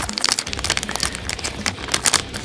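Foil blind-bag packet crinkling and crackling as it is handled and pulled open by hand.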